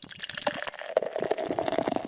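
Beer pouring into a glass: a steady splashing pour with a fine crackle of bubbles and a ringing note from the glass.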